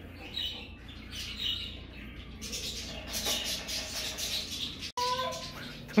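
Small pet birds chirping, sparse at first, then a dense run of chattering from about halfway through.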